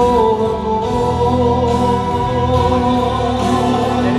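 Live male singing with musical accompaniment, the voice holding long, sustained notes into a handheld microphone.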